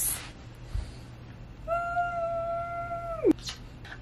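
Dog giving one long, high whine starting a little before halfway, holding a steady pitch and then dropping off sharply at the end.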